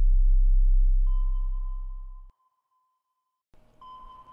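Electronic intro sound design: a deep bass rumble that fades out over the first two seconds, overlapped by a thin, steady electronic ping tone that starts about a second in and rings on. The ping stops briefly and starts again near the end.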